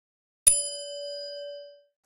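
A single bell ding sound effect: one strike about half a second in, ringing for just over a second as it fades away.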